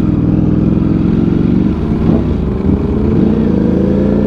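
Ducati Panigale V4's 1103 cc V4 engine through an Arrow titanium slip-on exhaust, pulling away in first gear. The engine note falters briefly about two seconds in, then climbs steadily in pitch as the bike gathers speed.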